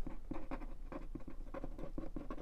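Sharpie permanent marker writing on a paper card: a quick run of faint strokes as letters are drawn.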